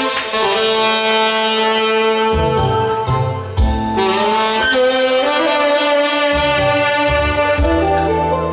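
Saxophone playing the melody of a Korean trot song's instrumental interlude in long held notes, over a backing track with bass.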